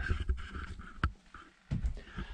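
Handling noise as the camera is picked up and carried: low uneven rumbling thumps, with a sharp click about a second in and another thump near the end.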